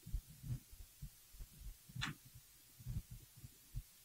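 Faint, irregular low thumps and knocks of a handled book and hands against a wooden lectern, with one short sharper click about two seconds in.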